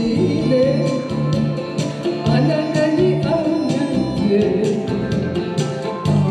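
Karaoke: a woman singing into a microphone over a backing track with a steady beat.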